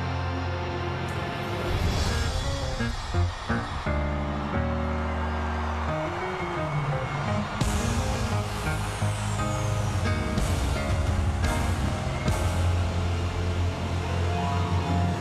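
Live band playing an instrumental passage with drums, bass guitar, guitar and piano, heavy held bass notes, and several cymbal crashes near the end.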